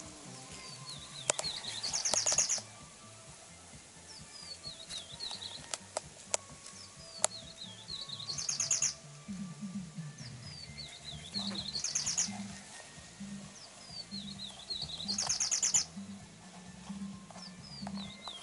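A songbird singing the same phrase over and over, about every three to four seconds: a string of short sweeping chirps that ends in a fast trill.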